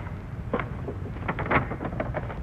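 A large sheet of paper being handled and unfolded, rustling several times, loudest about a second and a half in, over a steady low hum and hiss.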